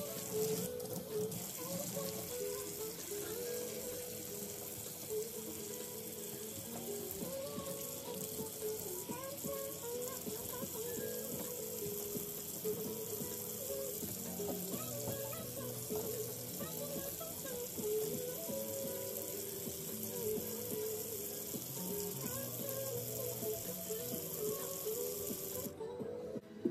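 Kitchen faucet running steadily, water splashing over hands and an object being rinsed under it; the water cuts off near the end. Background music plays throughout.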